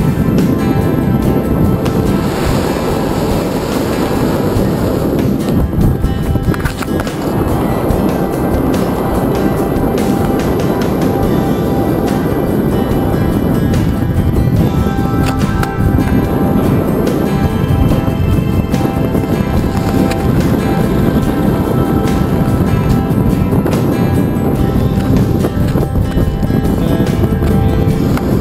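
Background music soundtrack playing steadily, laid over the footage.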